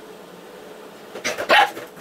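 Labradoodle barking: two quick barks past the middle, the second louder.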